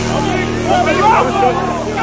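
Several rugby players' voices calling out on the pitch at once, overlapping, over a steady low hum.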